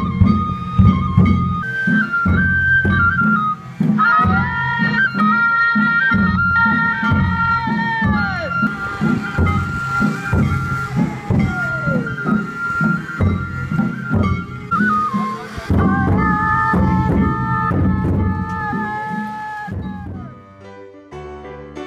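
Japanese festival float music: bamboo flutes play a melody of held notes, some falling away in slides, over a steady beat of taiko drums.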